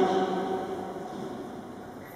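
A single held musical note, one steady pitch, loudest at the start and fading away over about a second and a half in the reverberant church.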